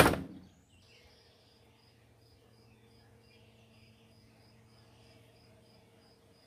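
A white uPVC door shut with a knock right at the start, dying away within half a second. After it, a faint cricket chirping steadily about three times a second over a low steady hum.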